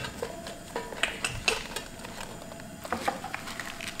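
Stiff collard green leaves rustling and crinkling as they are handled and laid into a glass pot over a steamer basket, with scattered light clicks and taps.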